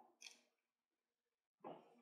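Near silence: room tone in a pause between spoken sentences, with two faint, very brief sounds.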